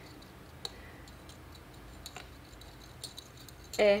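Quiet room noise with a few faint, scattered clicks, about three in four seconds; a woman's voice comes in right at the end.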